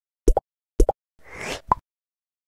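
Logo-reveal sound effect: two quick plops about half a second apart, then a short whoosh that swells and fades, and a sharper, higher-pitched pop just before the end.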